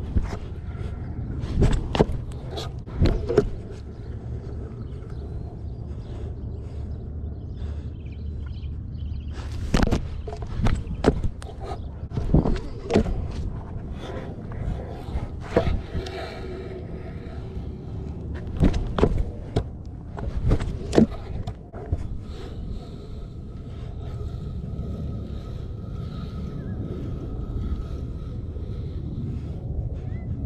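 Stunt scooter wheels rolling on a hard court, a steady low rumble, with sharp clacks and knocks of the scooter and the rider's feet scattered through as flatland tricks are done.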